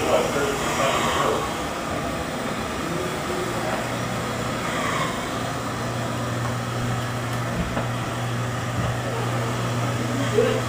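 A steady low hum over a constant noisy background, the hum growing stronger about three and a half seconds in.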